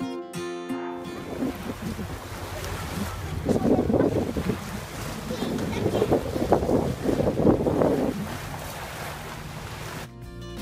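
Wind gusting across the microphone over the wash of small waves on a sandy beach, with two stronger gusts through the middle. Guitar background music cuts off about a second in.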